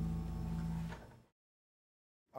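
A held keyboard chord at the end of a gospel piano piece, dying away and fading to dead silence about a second and a quarter in.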